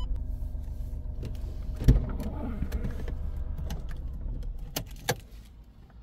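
Handling noise from a handheld camera being moved around a car cabin: a steady low rumble with a sharp knock about two seconds in and two clicks near the end, fading over the last two seconds.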